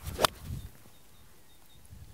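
A golf iron strikes a ball off the turf with one sharp click about a quarter of a second in. It is a solid, well-compressed strike, called "good contact".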